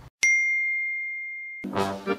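A single bright bell-like ding sound effect, struck once about a quarter second in and ringing on as one clear tone, fading slowly until music cuts in near the end.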